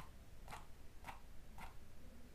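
Faint computer-mouse clicks, evenly spaced at about two a second.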